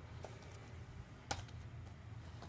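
A few faint clicks from a plastic DVD case being handled, the clearest a little over a second in, over low room hum.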